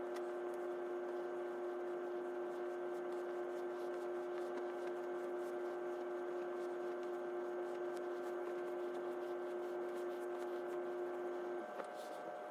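A steady hum of several held tones, the strongest stopping shortly before the end, with faint rustling of fleece fabric being handled.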